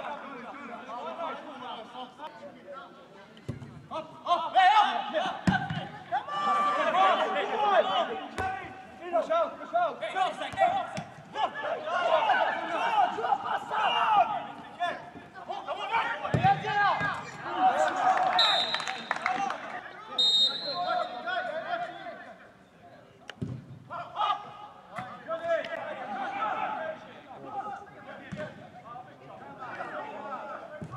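Several men's voices shouting and calling out over one another during a football match, with a few sharp thuds between the calls.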